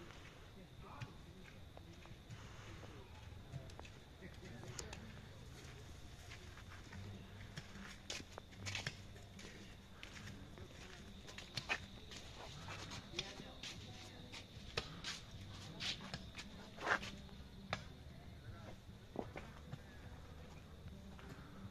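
Faint background voices with a low steady hum, and scattered light clicks and knocks, mostly in the second half.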